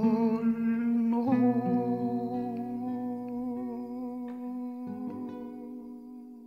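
A vocal ensemble holding the closing chord of a Russian romance, hummed. The voices slide up into the chord at the start, shift to a new chord about a second in, and fade away steadily.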